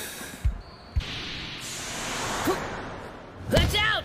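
Sound effects of an animated volleyball rally: two dull low thumps, then a steady rushing wash of crowd noise, then sharp squeaks, like sneakers on the court, near the end.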